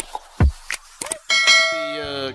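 A few sharp beat hits from the intro music, then about 1.3 s in a bright bell-like chime rings out and slowly fades: the notification-bell sound effect of a subscribe-button animation.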